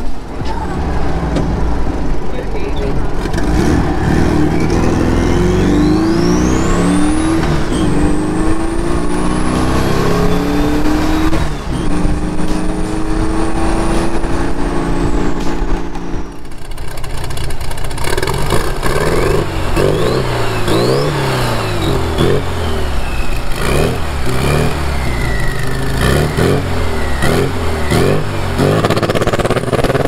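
Turbocharged air-cooled VW Beetle flat-four accelerating hard through the gears, the engine note climbing and dropping with each shift, with a turbo whistle that rises to a high, steady whine. About halfway through the sound cuts abruptly to another run of hard revving, again with rising turbo whistles.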